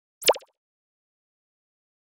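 A single short synthetic pop sound effect about a quarter second in: a quick downward sweep in pitch, like a plop, of the kind that marks on-screen graphics popping into place.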